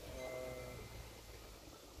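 A person's short, drawn-out hesitant "uh" held on one pitch. A faint low rumble follows.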